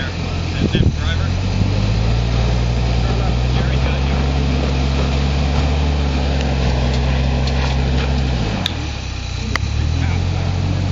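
Hummer SUV's engine running at steady revs under load as it crawls over a rough dirt trail. The revs drop about eight and a half seconds in and pick up again a second later, with two short clicks near the end.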